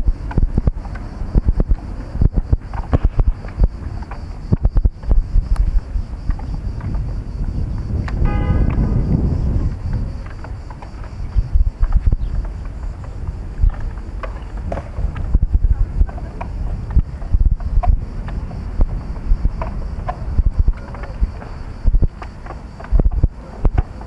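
Wind buffeting the microphone in uneven gusts, with frequent bumps and thumps. About eight seconds in, a brief pitched tone sounds over a swell of low rumble.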